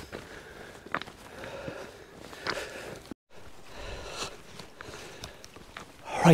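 Footsteps walking slowly uphill on a stony path, heard as a few faint scuffs and crunches over a quiet outdoor background. The sound drops out completely for a moment about three seconds in.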